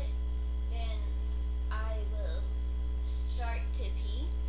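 Steady low electrical mains hum in the recording, the loudest sound, with a faint voice-like sound twice.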